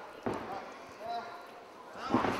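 A single thud of wrestlers' bodies on the ring canvas about a quarter second in, over a low murmur of crowd voices. The crowd noise swells right at the end.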